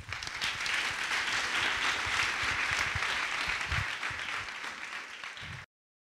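Audience applause at the close of a talk, a dense steady clapping that cuts off suddenly near the end.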